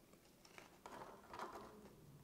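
Near silence with a few faint, short handling noises, about half a second, one second and one and a half seconds in, as a hot glue gun is pressed against a plastic bottle to glue it.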